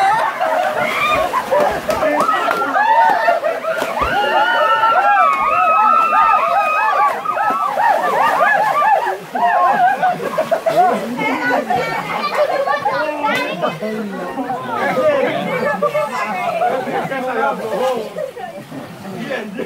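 A group of people shouting and laughing over one another while splashing about in waist-deep water.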